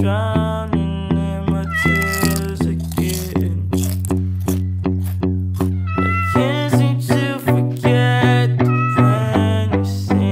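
Kitten meowing a few times over background music with a steady beat.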